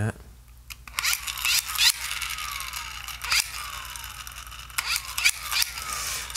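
A WWII squeeze-lever dynamo flashlight being pumped by hand, about four squeezes. Each squeeze spins up the geared generator with a whirr, followed by a falling whine as it coasts down, powering the bulb.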